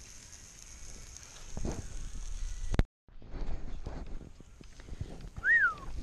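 Meat faintly sizzling in a cast-iron frying pan, cut off abruptly about three seconds in. After the cut come low handling knocks and, near the end, one short whistled note that rises and falls.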